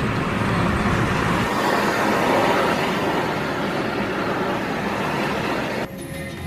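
Steady, loud road-vehicle noise, a dense rushing mix of engine and tyre sound, which cuts off abruptly just before the end.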